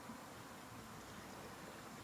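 Faint steady background noise, close to room tone, with no distinct sounds standing out.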